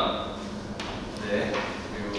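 Pages of a glossy album photobook being turned and handled by gloved hands: a few short clicks and paper rustles under a man's quiet speech.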